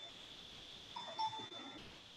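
A quiet pause in a video-call audio feed: faint room noise with a thin, steady high-pitched whine. About a second in there is a brief, faint two-note pitched sound.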